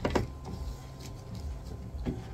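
A short knock or click just after the start, as supplies are handled on a wooden table, over a low steady rumble.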